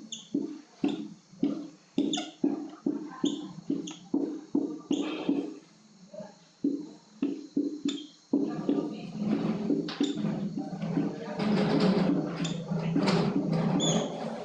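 Whiteboard marker squeaking and scratching on the board in a quick run of short strokes, then in longer, more continuous strokes from about eight seconds in as a chemical structure is written out.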